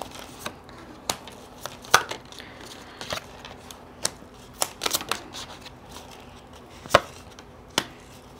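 Tarot cards being handled and laid down on a table: about ten irregular, sharp taps and slaps of cards against the tabletop.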